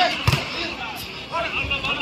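A volleyball struck hard by a player's hand in an attack at the net: a sharp slap about a third of a second in, with a second, duller thud of the ball about a second and a half in. Voices of a commentator and crowd run underneath.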